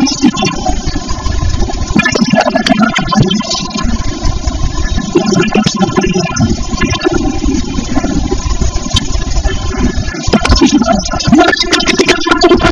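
Voices over a steady low rumble.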